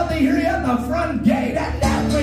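Live Celtic folk-rock band playing a song: acoustic guitar strumming under a bending melodic line, with some singing.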